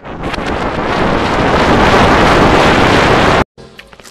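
Loud, heavily distorted rushing noise from an audio-effects edit, swelling over about the first second, holding steady, then cutting off abruptly about three and a half seconds in.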